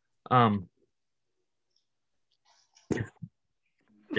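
Only speech, heard over a video call: a hesitant 'um', about two seconds of dead silence, then 'if'.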